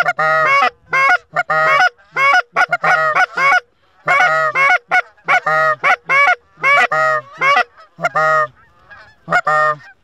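Loud goose honks and clucks in quick series of short calls with brief pauses, thinning out near the end.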